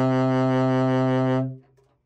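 Selmer Paris Mark VI alto saxophone holding its lowest note, the extended low A, as one steady, full tone. The note stops about a second and a half in.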